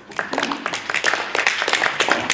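A crowd of people applauding, many hands clapping, breaking out suddenly and continuing.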